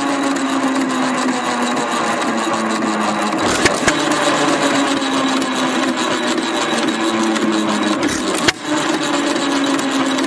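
Fuller & Johnson single-cylinder hit-and-miss engine running steadily while belt-driving an ice cream freezer, with a couple of sharp clicks about three and a half seconds in.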